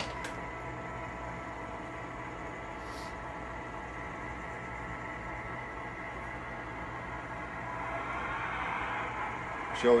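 MTH Premier O-gauge GP38-2 model diesel locomotive with Proto-Sound 3 backing up on the layout: the steady hum of its electronic diesel-engine sound and its running gear on the track, growing a little louder near the end as it comes closer.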